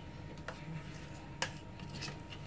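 Two light clicks, a faint one about half a second in and a sharper one about one and a half seconds in, over a low steady hum.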